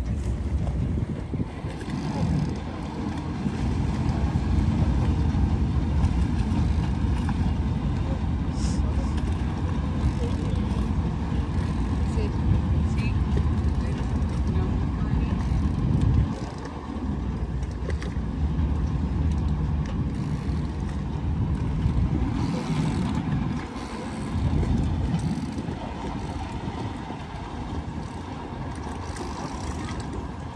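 Wind rumbling on the microphone over the running engine noise of a boat moving across open water. The rumble swells and dips like gusts, easing briefly about 16 and 24 seconds in.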